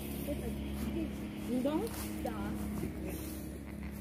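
Quiet, indistinct talking, with a steady low hum underneath.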